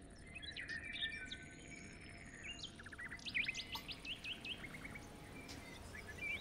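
Faint birds chirping in the background, with a run of quick chirps and short rising whistles in the middle, over a low steady hiss.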